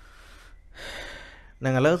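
A talker's audible breath drawn in through the mouth, a soft hiss and then a louder one about a second in, just before his speech resumes near the end.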